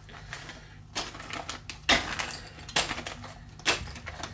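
Small plastic zip bags of red aluminium RC upgrade parts being picked up and handled: the plastic crinkles and the metal parts click against each other about four times.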